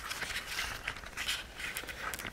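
Handling noise of a video camera being picked up and moved: scattered light clicks and rustling.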